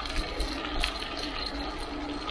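Riding noise of a bicycle rolling along pavement, heard from a handlebar-mounted camera: a steady low rumble and hiss with a few faint light clicks and rattles.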